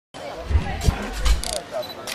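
People talking in the background, with a few dull thuds about half a second apart.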